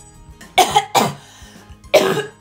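A woman coughing into her fist: two harsh coughs about half a second apart, with a third starting at the very end, over soft background music.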